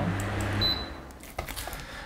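A desk fan's control panel gives one short high beep about half a second in, the sign that it has received an IR command. A soft hiss fades under it, with a few faint clicks afterwards.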